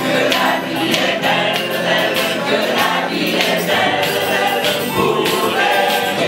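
Mixed choir of men and women singing a French song together live, amplified through stage microphones.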